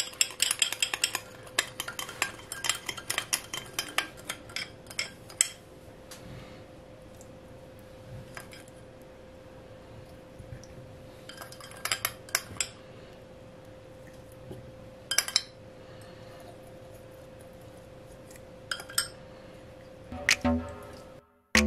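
A metal teaspoon clinking rapidly against a small glass cup as it stirs an oil marinade, for about five seconds; after that only a few separate clinks of the spoon as the marinade is spooned out. A faint steady hum runs underneath.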